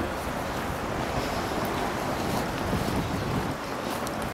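Wind buffeting the camera microphone, a steady low rumble over outdoor noise.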